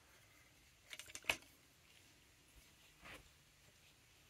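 Microphone stand's folding tripod legs being pulled out and spread: a few short clicks about a second in, one louder than the rest, and one more faint click near the end, with near silence between.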